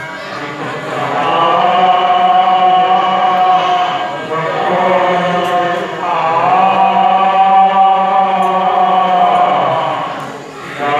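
Devotional group chanting in long, drawn-out phrases of held notes, with short breaks about four and six seconds in.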